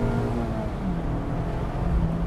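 Manual car's engine running while being driven, a steady engine note whose pitch drops slightly a little under a second in.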